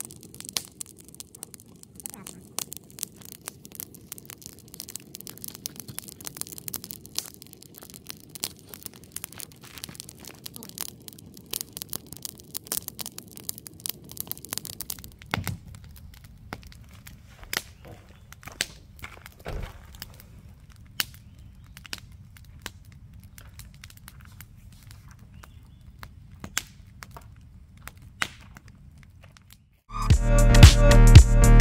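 Wood campfire crackling, with irregular sharp pops and snaps from the burning logs and sticks.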